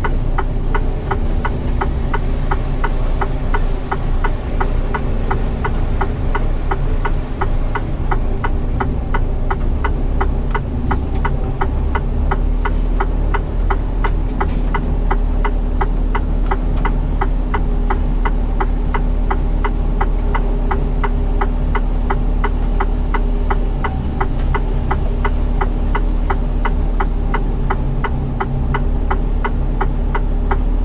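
Inside a Mercedes Actros SLT truck cab, the straight-six diesel engine runs low and steady at slow manoeuvring speed. A rapid, even ticking from the cab keeps on over the engine sound throughout.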